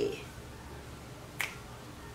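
A single short, sharp click about a second and a half in, against quiet room tone.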